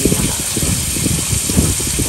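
Sliced beef sizzling in melted butter on a hot mookata (Thai dome grill) pan: a steady hiss with many small crackles.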